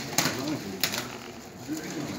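Metallic foil gift wrap crinkling and tearing as it is pulled off a board, with two sharp rustles about half a second apart, over faint murmured voices.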